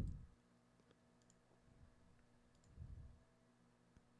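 Near silence with a few faint, scattered computer mouse clicks, and a faint low thump about three seconds in.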